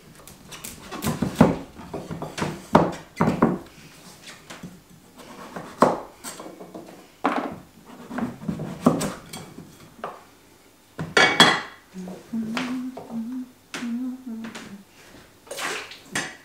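Large kitchen knife cutting through a big butternut pumpkin on a wooden chopping board: irregular knocks of the blade and the cut pieces against the board.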